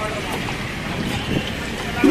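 Spinach fritters (palak bhaji) deep-frying in a kadai of hot oil, a steady sizzle, with voices in the background.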